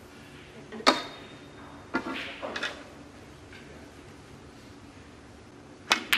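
Sharp single clicks of a snooker cue and balls striking: a loud one with a short bright ring about a second in, a few lighter ones a second later, and the cue tip hitting the cue ball at the very end.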